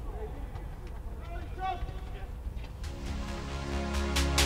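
Faint distant voices over a low rumble, then music with a steady beat comes in about three seconds in and grows louder.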